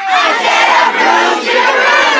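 A large crowd of children and teenagers shouting together in one loud, sustained group yell.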